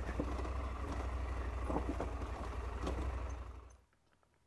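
KTM 890 R's parallel-twin engine running steadily at low revs as the motorcycle rolls slowly over a dirt track, with a few faint knocks; the sound fades out shortly before the end.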